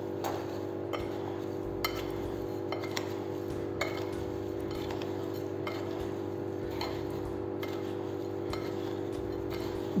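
Hands mixing cut lemon pieces with sugar and salt in a glass bowl: scattered faint clicks and taps against the glass over a steady low hum.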